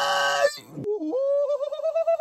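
A man's drawn-out wailing cry, loud and harsh, breaking off about half a second in; after a short pause a second long wail rises and then holds with a wavering pitch.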